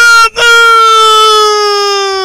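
A person's voice crying out one long, loud, high note that sinks slightly in pitch, after a brief first cry at the same pitch.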